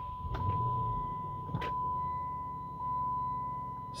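2008 Dodge Challenger SRT8's 6.1-litre Hemi V8 starting: it fires about half a second in, flares briefly, then settles into a steady idle. A steady high electronic tone from the car sounds over it throughout.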